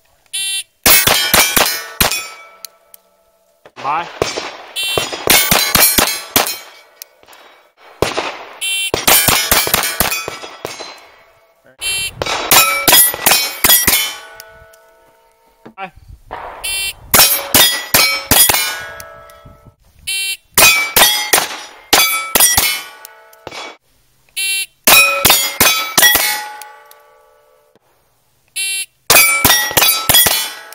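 .22 rimfire pistol firing quick strings of several shots each, every hit answered by the ring of a steel plate target. About eight such strings come at intervals of a few seconds, with pauses between them.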